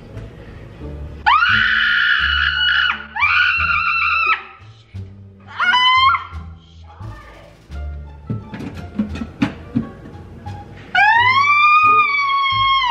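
A young woman's staged screams of pain for a garbage-disposal prank: two long, high shrieks, a short rising one, then another long one starting near the end. A few short knocks come between them, over pop music with a steady bass line.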